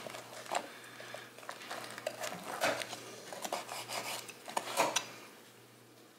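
A carving knife cutting into a roast duck's wing joint and crisp skin on a wooden board, with the wing pulled off by hand: faint, irregular crackles and knife scrapes that fade out near the end.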